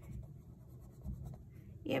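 Black coloured pencil shading on sketchbook paper: a soft scratching of pencil strokes darkening the join between the ladybug's head and body.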